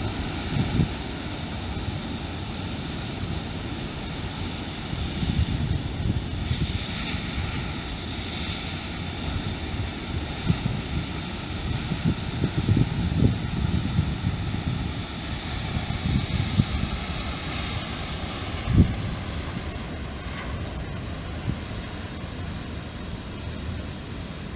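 Surf breaking on a rocky shore, a steady wash of noise, with wind buffeting the microphone in low gusts.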